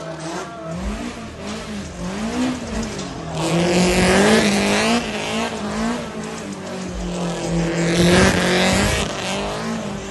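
A car's engine revving up and down as the car drifts, with tyre noise swelling loudly about a third of the way in and again near the end.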